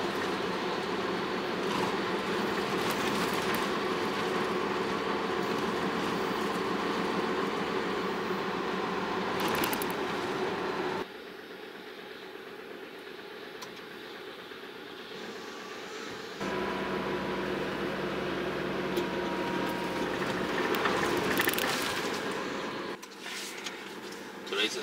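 Steady engine hum and tyre noise inside the cab of a tractor-trailer truck driving on a wet road. The level drops abruptly about eleven seconds in and comes back about five seconds later with a steady low drone.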